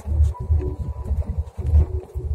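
Uneven low rumble of a car driving slowly along a rough, narrow concrete lane, heard from inside the cabin.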